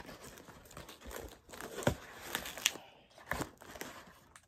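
A cardboard shipping box pulled open by hand: cardboard and packing tape crinkling and tearing in a run of irregular crackles, with the sharpest ones a little under two seconds in and near the end.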